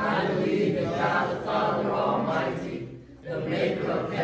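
A congregation's many voices together in unison, chanting in phrases, with a short break a little after three seconds in.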